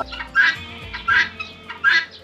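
Guinea fowl calling: three short, harsh calls, roughly one every three-quarters of a second.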